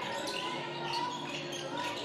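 Court sound of a basketball game in play: the ball being dribbled on the hardwood floor, with the echo of a large indoor hall.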